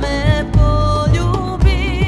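A Serbian sevdah-style ethno song: a woman's sung vocal, wavering in vibrato, over a deep beat that falls about twice a second.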